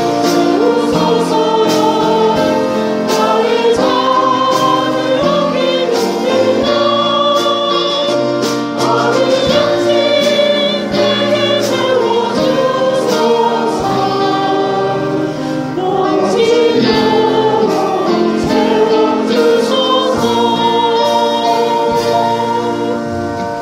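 A choir singing a hymn in sustained, held notes, with instrumental accompaniment.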